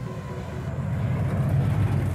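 A car's engine and exhaust running with a low rumble that grows steadily louder.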